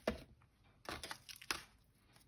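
Scrapbook paper being handled and slid across a cutting mat: faint, short rustles and scrapes, one at the start, another about a second in and a third about a second and a half in.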